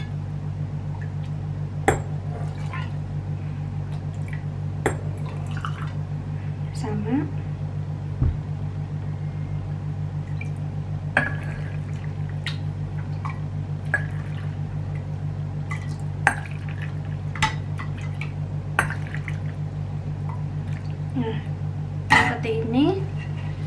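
A metal ladle clinking against a stainless-steel pot and glass jars, about nine short sharp clinks spread through, with liquid pouring as vinegar brine is ladled over sliced young ginger in the jars. A steady low hum runs underneath.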